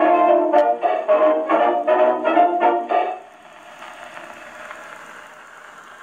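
Acoustic Columbia Viva-tonal Grafonola playing a late-1920s Columbia 78 rpm shellac record: a dance band's brass ends the tune on a run of short, accented chords. About three seconds in the music stops, and only the record's steady surface hiss goes on.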